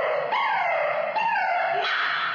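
A young woman's voice giving three loud, howl-like wails in a row, each sliding down in pitch.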